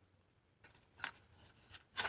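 A bar of soap handled close to the microphone: a few short, faint rubs and scrapes, starting about half a second in, the loudest at the end.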